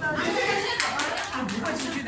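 A run of quick hand claps, several strikes over about a second in the second half, mixed with people's voices.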